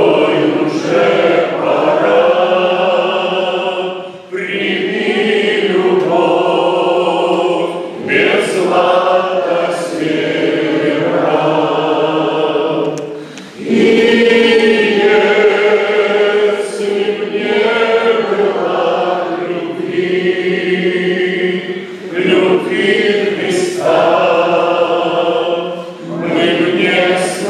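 A small group of men singing a hymn together, one lead male voice amplified through a microphone over the others. They sing in long held phrases with short breaks every few seconds.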